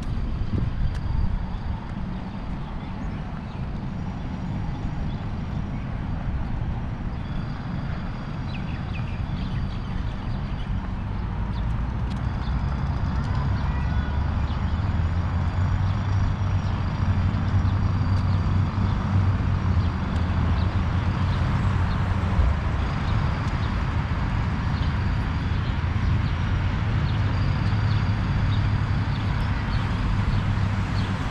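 Road traffic from a busy multi-lane road: a continuous low rumble of passing cars and trucks that swells louder about halfway through.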